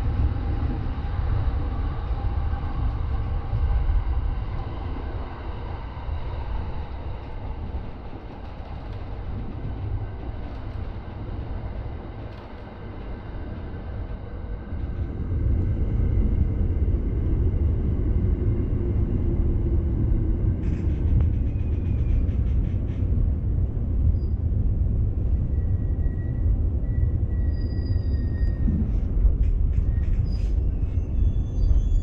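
Electric commuter train running, heard from inside the cab: a motor whine that sinks in pitch and fades over the first few seconds, then steady wheel-on-rail rumble that grows louder about halfway through. Clicks follow a few seconds later, and there are a few brief high tones near the end.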